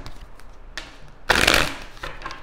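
Deck of tarot cards being shuffled by hand: a short rustle of cards a little under a second in, then a louder burst of shuffling lasting about half a second just past the middle.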